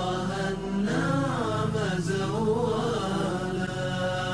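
Nasheed music: a wordless vocal melody, wavering in pitch, chanted over a low sustained vocal drone.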